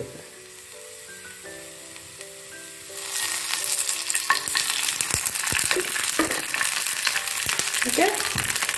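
Coconut oil poured into a hot non-stick pan of curry leaves, starting to sizzle loudly about three seconds in, with scattered crackling pops as the leaves fry.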